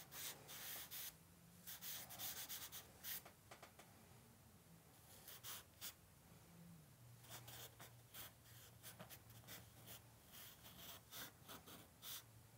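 Compressed charcoal stick scratching across drawing paper in quick, short strokes that come in bursts with brief pauses, all faint. A low steady hum runs underneath.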